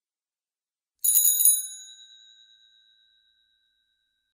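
Classic bicycle bell rung in one quick trill of rapid strikes about a second in, its ring then fading away over about two seconds.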